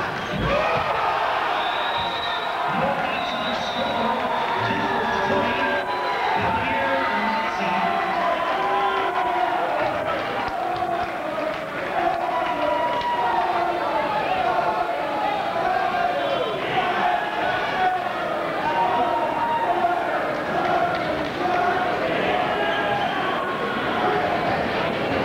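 Crowd chatter in a school gymnasium, many voices talking over one another, with a few basketball bounces in the first seconds.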